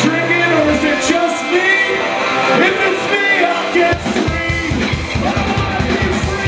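Rock band playing live: electric guitars, bass and drums with singing. A held low bass note stops about half a second in, and the low end comes back with a pulsing beat about four seconds in.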